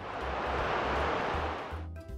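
Whoosh sound effect of a superhero flying in, swelling and then fading over about two seconds, over background music with a low bass line.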